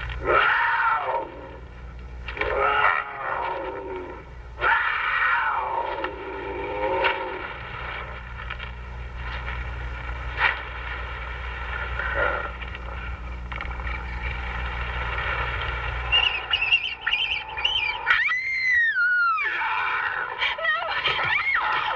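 Werewolf howls in a film soundtrack: long wavering howls that slide down in pitch, three in the first seven seconds, over a low steady hum. Near the end comes a shorter, higher wavering cry.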